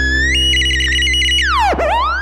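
Theremin over a held closing chord: it glides upward, jumps higher and warbles in rapid stutters, then swoops steeply down and back up. The chord underneath holds steady.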